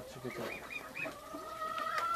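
Penned fowl calling: four short high calls in quick succession, then one long steady note held through the second half.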